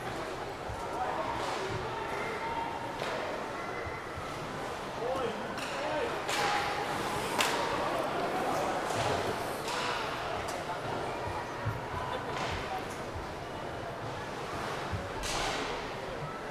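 Ice hockey play in a rink: voices calling out on and around the ice over a steady rink din, broken by sharp knocks of puck and sticks, the loudest about seven seconds in.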